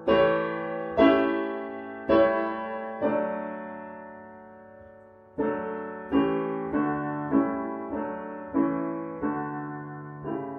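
Roland digital piano playing a four-part hymn setting in block chords, struck about once a second, each fading after it is struck. Near the middle one chord is held for about two seconds before the chords move on faster.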